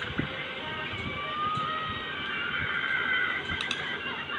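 Cartoon character crying in a long, wavering high-pitched wail that slowly rises in pitch.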